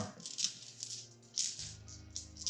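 Small plastic dice clicking and rattling against each other and the table as a rolled handful is gathered and sorted, a few separate clicks over about a second and a half, with faint background music.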